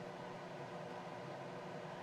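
Steady room tone: a low, even hiss with a faint hum and no distinct events.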